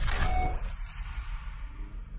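Tail of a cinematic logo-reveal sound effect: a low rumble that fades away steadily, with a brief bright tone just after the start.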